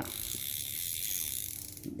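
A small Olympic spinning reel being cranked by hand gives a fast, steady ratcheting click from its rotor and gearing, easing off near the end. Its reverse switch is stuck, so the reel turns forward only.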